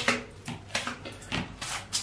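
Shower squeegee wiping water off the tiled wall and glass in quick strokes, a short swish about twice a second.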